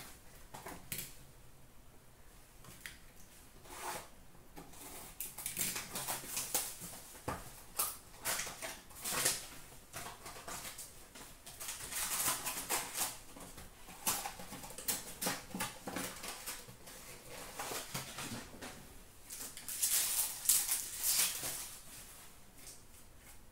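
Trading-card packs being torn open and the cards handled: repeated crinkling and rustling of wrappers and card stock, in short bursts, loudest near the end.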